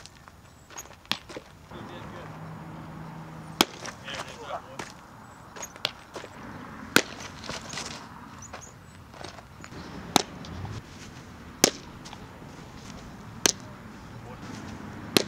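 Baseball smacking into a leather catcher's mitt and fielding gloves: five sharp pops a few seconds apart, over open-air field background.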